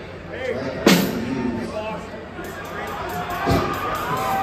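A large crowd shouting and cheering between songs at a punk rock show, with one sharp loud crash about a second in and a low thump near the end.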